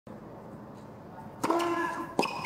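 Hushed arena background, then a single sharp crack of a racket striking a tennis ball about one and a half seconds in, the serve at match point. A voice calls out briefly with a held note right after the hit.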